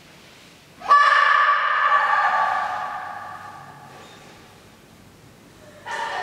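A loud held note with a horn-like ring starts suddenly about a second in. It fades slowly over a few seconds with a long echo off the stone vaults of a large hall. A second note begins near the end.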